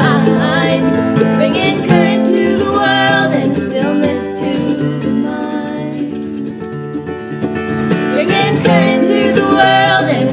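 Acoustic guitar and mandolin playing a folk-bluegrass song together, with women's voices singing in places. The music is softer in the middle.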